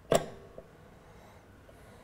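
A sharp metallic click with a brief ring as the interchangeable brass cylinder of a Reuge Dolce Vita music box is fitted into its mechanism, then a faint second click about half a second later.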